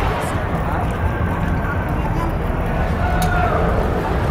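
Busy city street ambience: indistinct voices of passers-by over a steady low rumble, with traffic among it.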